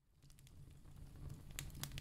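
Fireplace crackling under a steady rain ambience, fading in from silence and growing louder, with a couple of sharp pops in the second half.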